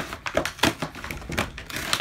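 Paper and card packaging being handled and pulled open, crinkling and rustling in a few short, irregular crackles.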